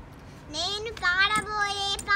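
A young girl singing unaccompanied. She comes in about half a second in and holds long, steady notes.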